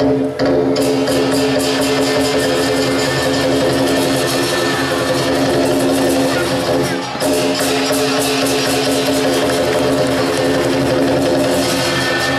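Lion dance music: fast, dense drum and cymbal strikes over sustained ringing tones, dipping briefly about seven seconds in.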